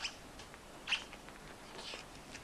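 Faint short, high-pitched calls from birds in an aviary: three brief chirps about a second apart.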